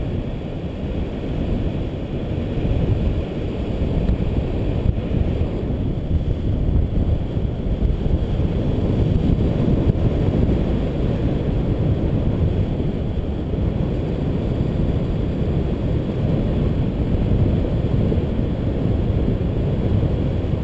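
Airflow of a paraglider in flight rushing over the microphone: a steady low rumble of wind.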